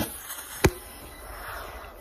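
Two sharp clicks, the second and louder one a little over half a second in, over faint room noise.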